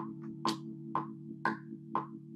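Rhodes electric piano patch from Omnisphere holding a soft chord, with a metronome click ticking steadily twice a second and a stronger click on each bar's downbeat.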